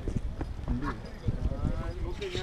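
People talking, over a low rumble of wind on the microphone and a few light knocks.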